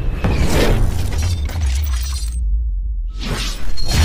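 Cinematic intro sound design: a deep bass rumble under whooshing sweeps and crashing hits. About two-thirds through, the highs fall away for under a second, then a loud hit comes back in just before the end.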